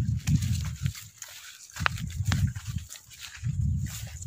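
Wind buffeting a phone microphone in open fields: irregular low rumbling gusts that come and go, with a couple of sharp clicks about two seconds in.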